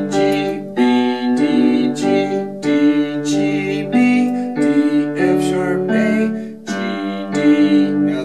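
Casio lighted-key electronic keyboard on a piano-pad voice playing left-hand bass notes and broken chords in G major: a slow run of single struck notes, each ringing on under the next.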